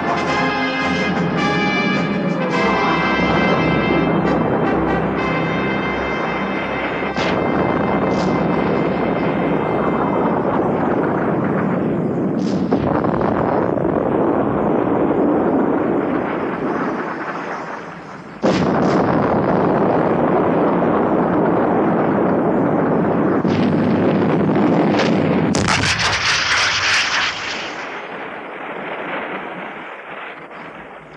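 Warship's guns firing: a run of heavy booms and shell explosions, with one sudden loud blast about two-thirds through, over dramatic background music that is strongest at the start.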